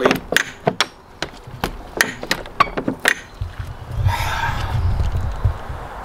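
Iron latch handle of a heavy old wooden door being turned and rattled, a quick run of metal clicks and wooden knocks for about three seconds as the door is tried. The door is locked and does not open. A rushing noise with a low rumble follows near the end.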